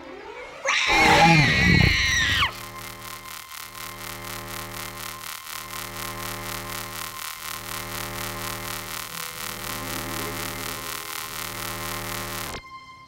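Magic transformation sound effect: a loud, wavering creature-like cry about a second in, then a steady synthesized hum of many layered tones that pulses roughly every two seconds and cuts off suddenly at the end.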